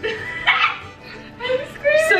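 A woman's loud wordless vocal exclamations, one about half a second in and another near the end, sliding up and down in pitch.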